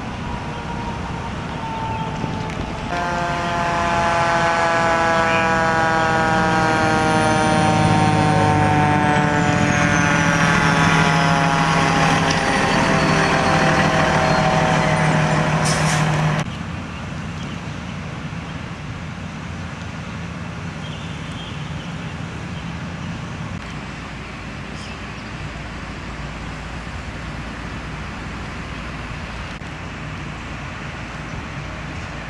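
Fire engine's diesel engine running loud as the truck drives by, its note slowly falling with a high whine gliding down, for about thirteen seconds before cutting off abruptly. Then a quieter, steady rumble.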